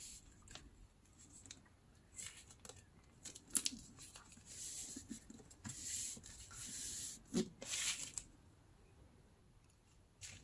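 Newspaper being folded and creased flat by hand: faint paper rustling and rubbing in bursts through the middle, with a couple of sharper crinkles, quiet at the start and near the end.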